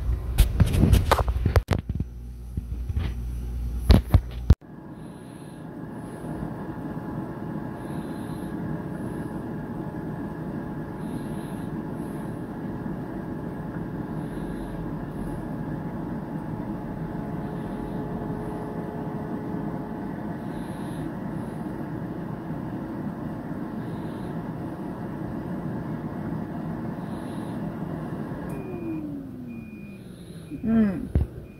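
Handling knocks and rustling for the first few seconds. Then a Farberware digital air fryer runs with a steady fan whir and a faint hum. Near the end, as its timer reaches zero, the fan winds down with a falling pitch and the fryer starts beeping to signal that the cook cycle is done.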